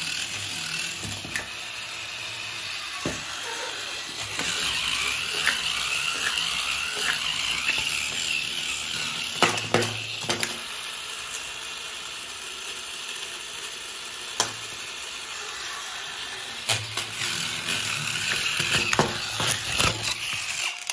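Small battery-powered DC motor and plastic gearbox of a toy tumbling robot running steadily, a whirring with a ratcheting gear clatter. Scattered sharp knocks come as the robot's plastic arms and legs strike the floor while it flips over.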